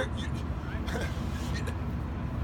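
A man laughs briefly and quietly into a handheld microphone after a spoken word, over a steady low rumble.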